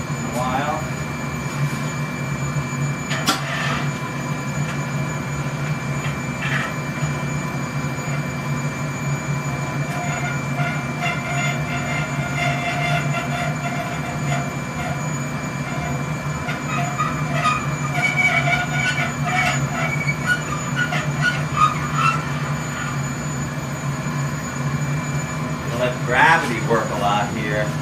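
Glassblowing furnace running with a steady roar. There are a few sharp metallic clinks, and from about ten seconds in there is intermittent squeaking as the steel blowpipe is turned on its rest at the furnace mouth.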